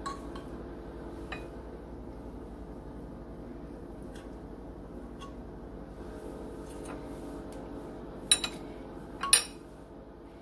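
A metal utensil clinking and scraping against a glass baking dish while cutting into a pan of brownies: a few light clicks, then two sharper clinks near the end.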